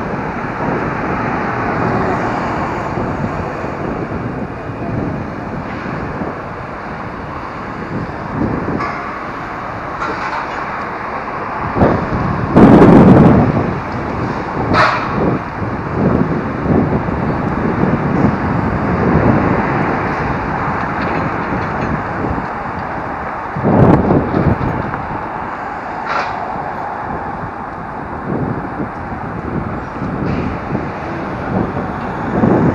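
Wind rushing over the microphone and road noise from a moving Superpedestrian e-scooter, a steady rush with two louder surges about twelve and twenty-four seconds in. A couple of short sharp clicks stand out a few seconds after each surge.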